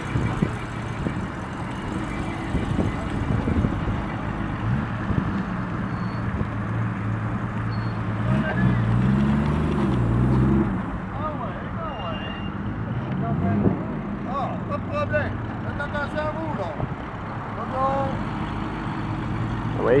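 1955 Buick Special's V8 engine running at low speed as the sedan pulls slowly away, a steady low engine note.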